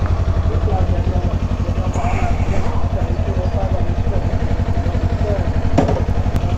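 Kawasaki Ninja 250 (2018) parallel-twin engine idling steadily, heard close up from the bike. The abnormal noise the dealer repaired is no longer there.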